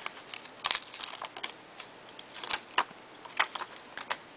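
Clear plastic stamp sheet and its plastic packet being handled: scattered light crinkles and clicks, with a few sharper clicks as the stamp is peeled off and pressed onto an acrylic block.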